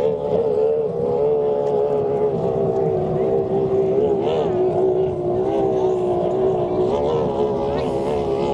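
Formula 1 racing powerboat's Mercury V6 two-stroke outboard running flat out, a sustained high engine note heard from a distance, holding steady with small wavers in pitch and a brief wobble about halfway through.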